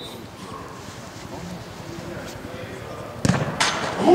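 A football struck hard in a penalty kick, a single sharp thud about three seconds in after a quiet pause with faint voices, followed a moment later by a second, weaker knock.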